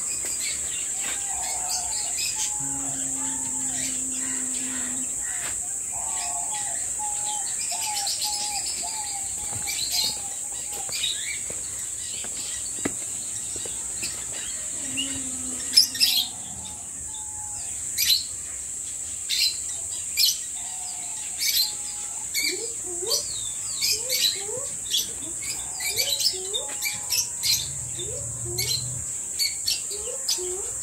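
Small cage birds in an aviary chirping, the short calls coming thicker and faster through the second half, over a steady high-pitched hiss.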